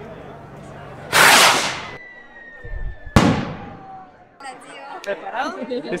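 Hand-launched firework stick rocket: a loud rushing whoosh about a second in, then a single sharp bang about two seconds later as it bursts.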